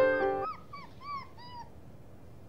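Piano music ending about half a second in, then a puppy whimpering: four short, high cries that rise and fall, about a third of a second apart.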